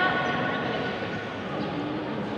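A long pitched tone, rising at its start and then held steady for about a second and a half before it fades, over the steady murmur of the hall.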